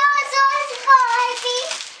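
A child's high voice singing a couple of long held notes that slide downward.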